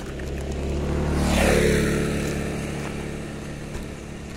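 A motor vehicle passes close by on the road. Its engine and tyre noise swell to a peak about a second and a half in, the pitch drops as it goes past, and it fades away over the next second or so.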